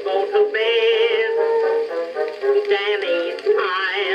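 An acoustic-era recording played back from an Edison Blue Amberol cylinder on an Edison phonograph: music with a wavering melody line over steady lower notes. The sound is thin and narrow, with no deep bass and no high treble.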